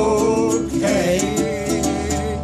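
A man singing with ukulele strumming, holding a long note early on before a short further phrase, with another voice singing along.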